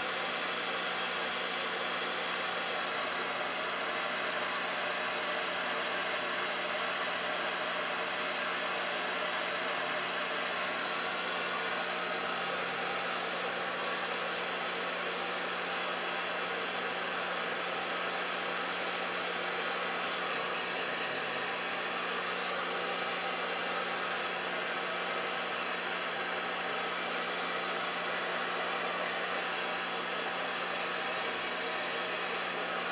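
Handheld hair dryer running steadily, a constant rush of blown air over a low motor hum.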